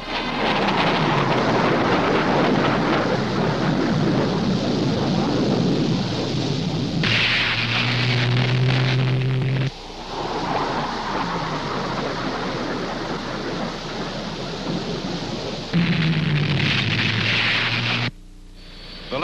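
Jet aircraft roar in low, high-speed passes over the course, dropping in pitch as the plane goes by. About halfway through a steadier hum with hiss cuts off abruptly, and a short burst like it returns near the end.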